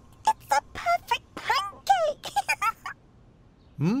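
A cartoon character's wordless voice sounds: a quick string of short, high-pitched syllables, with light background music, stopping about three seconds in.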